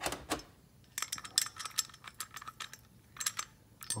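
Small metal engine parts clinking against each other and tapping on a steel workbench as they are handled and set down: a few light clicks at the start, a quick cluster about a second in, and a few more near the end.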